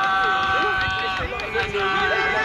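A group of men's voices chanting a long, held 'oh', breaking off just past the middle and starting again near the end.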